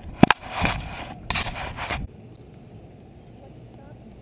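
Camera handling noise: the camera rubbing and scraping against clothing, with one sharp knock just after the start. It cuts off abruptly about halfway through, leaving a faint steady outdoor background.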